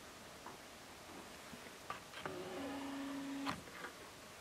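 A small electric motor whirring steadily for just over a second, starting and stopping with soft clicks, most likely a camcorder's zoom motor zooming in.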